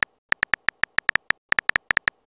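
Synthetic keyboard-tap sound effects from a texting-story animation, one short click for each letter typed, coming quickly at about seven a second with small uneven gaps.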